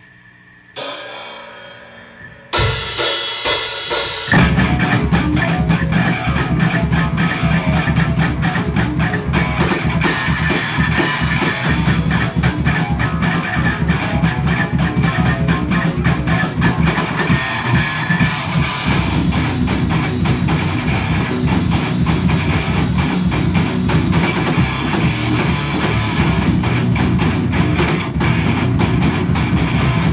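A rock band playing in a small rehearsal room: drum kit with cymbals, electric guitar and bass guitar. After a lone note about a second in, the band comes in at about two and a half seconds and plays on loud and unbroken.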